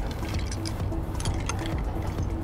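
Background music with a steady pulse, and over it a few light clinks of a metal bar spoon stirring ice in a glass beaker.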